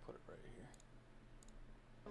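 Near silence: room tone with a faint murmur of voice in the first second and a few faint, sharp clicks.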